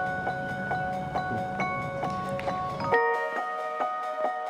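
Background music of bell-like mallet tones, with notes struck a few times a second. About three seconds in, the room sound under it drops out and the music moves to new notes.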